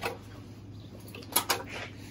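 Hands pulling the heart and lungs from a hanging rabbit carcass: quiet wet handling, with two short sharp clicks about a second and a half in, over a steady low hum.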